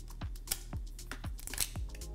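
Thin metallic-coated plastic cylinder crackling as it buckles under a finger pressing down on it, a run of irregular sharp clicks. It is being crushed past its elastic limit, leaving permanent creases.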